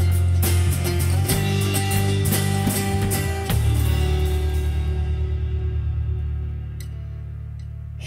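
Small live band of acoustic guitars, electric bass and drum kit playing the instrumental ending of a song. A final chord is struck about three and a half seconds in and rings out, fading over the following seconds.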